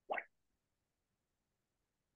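One brief soft pop just after the start, then silence.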